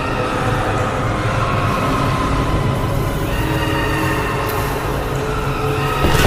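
Eerie background music: a steady rumbling drone with long sustained high tones layered over it.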